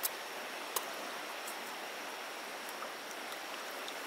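Steady rush of flowing river water, with two faint ticks in the first second.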